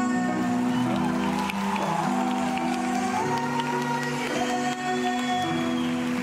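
A pop song performed live on stage: a band playing with female voices singing a duet.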